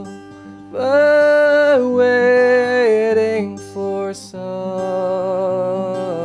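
Man singing to his own acoustic guitar: long held notes that bend and step down in pitch, a short break about four seconds in, then a wavering held note over the guitar. The guitar plays the same lick over and over between the chords.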